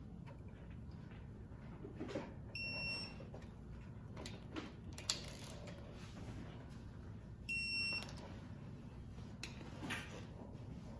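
Snap-on electronic torque-angle wrench beeping twice, each a high beep about half a second long, some five seconds apart, signalling that a cylinder head bolt has reached its added 90 degrees of turn. A few light clicks come between the beeps.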